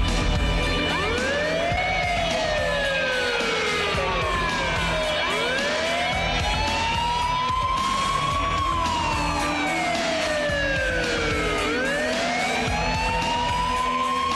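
Police car siren sounding a slow wail: three long sweeps, each slowly rising in pitch and then slowly falling.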